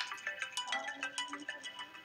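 A short electronic melody of quick, bright chiming notes, of the kind a phone ringtone or alert tone makes, dying away toward the end.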